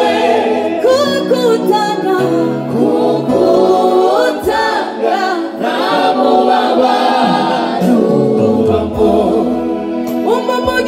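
Gospel worship team of men and women singing together into microphones, several voices in harmony over sustained low notes.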